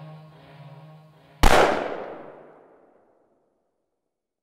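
Music with sustained tones fading out, then a single loud pistol shot about a second and a half in, its echo dying away over about a second and a half.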